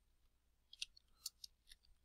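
A handful of faint computer keyboard keystrokes as a word is typed, over near silence.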